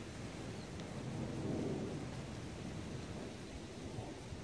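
A low rumbling noise that swells about a second and a half in and then eases off.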